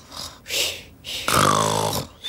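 A cartoon piglet snoring: a soft breathy draw, then a longer, louder low snore in the second half.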